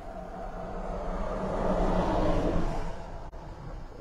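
A road vehicle passing by: its engine and tyre noise swells to a peak about two seconds in, then fades away.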